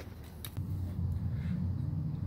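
Low, steady background rumble with a faint click or two about half a second in.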